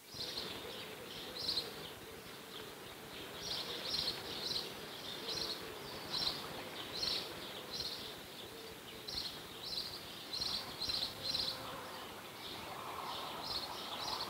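Garden nature ambience: short high chirps repeating every second or so, often in twos and threes, over a faint wavering buzz and a light hiss.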